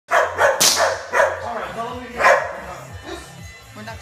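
A dog barking in a quick run of about six loud barks in the first two and a half seconds, then going quieter.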